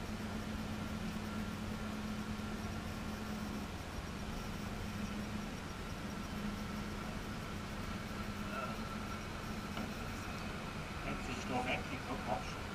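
A steady low hum over background noise, with faint men's voices near the end.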